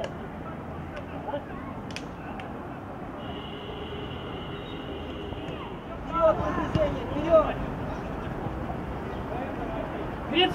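Open-air football pitch sound: a steady background hiss with distant shouts from players or coaches on the pitch, loudest from about six seconds in. Before the shouts, a steady high-pitched tone holds for about two and a half seconds.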